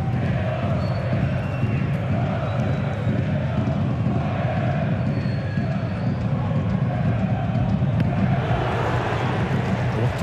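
Football stadium crowd singing and chanting steadily, a dense mass of many voices from the stands.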